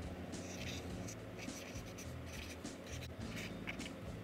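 Felt-tip marker writing: the tip scratching over the board in a quick run of short strokes as lettering is traced.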